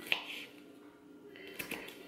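A few light taps of a knife chopping jalapeño pepper on a cutting board: one near the start and a couple near the end, over faint background music.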